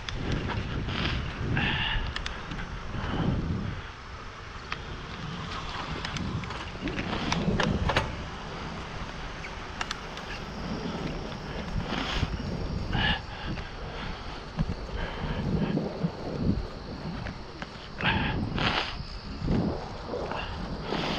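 Wind on the microphone over the steady rumble of a bicycle's tyres rolling on a paved trail, with a few short clicks and knocks along the way.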